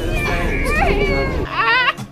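Young girls shouting and squealing excitedly over low street noise, ending in a high, wavering squeal.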